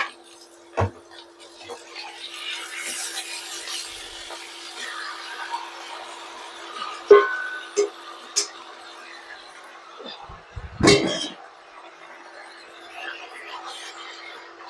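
Raw chicken pieces tipped from a bowl into a pan of hot oil with minced aromatics, sizzling, with clinks and knocks of the bowl and chopsticks against the pan and a louder knock near the end. A steady hum runs underneath.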